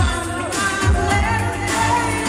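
Live pop music: a woman singing into a handheld microphone over a dance backing with a steady kick-drum beat.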